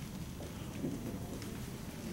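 Dry-erase marker strokes on a whiteboard, faint short scratches over a steady low room rumble.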